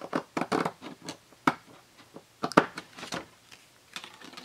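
Scissors snipping through folded cardstock in a series of short, sharp cuts, with paper being handled as the trimmed piece comes away.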